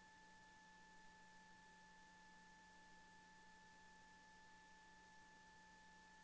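Near silence: a faint, steady high-pitched tone with a second tone an octave above it, over low hiss.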